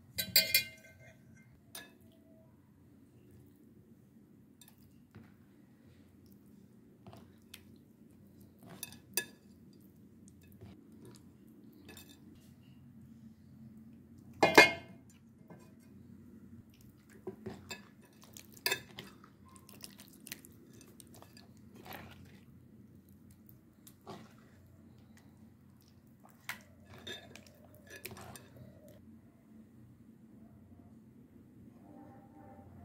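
Occasional clinks and knocks against a steel bowl and a ceramic plate as marinade-coated chicken pieces are handled and turned by hand. The sharpest knocks come just after the start and about halfway through, over a faint steady low hum.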